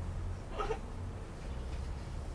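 A short, high, meow-like vocal cry from a person, about half a second in, over a steady low hum.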